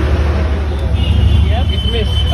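Steady low rumble of street traffic, with faint voices behind it. A thin high tone comes in about halfway through.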